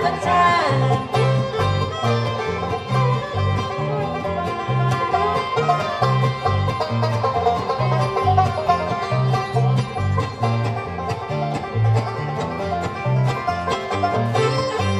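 Live bluegrass band playing an instrumental break with no singing: banjo, mandolin, acoustic guitar, fiddle and dobro over an upright bass that plays steady notes on the beat.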